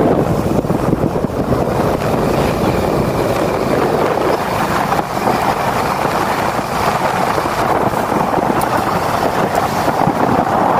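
A motorcycle under way on a dirt road: steady wind rush over the microphone with the engine and tyre noise beneath it.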